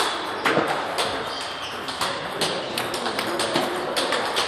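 Table tennis balls clicking on tables and paddles from several games in a busy hall, with sharp, irregular taps several times a second.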